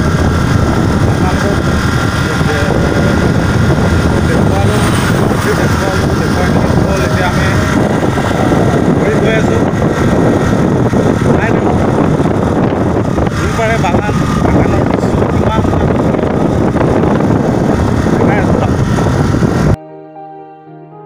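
Wind buffeting a handheld phone's microphone: a loud, steady rumbling noise that cuts off suddenly just before the end.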